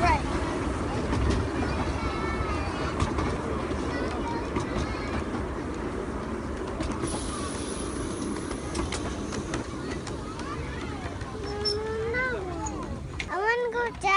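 Narrow-gauge railway passenger carriages rolling past close by: a steady rumble with scattered clicks from the wheels on the track.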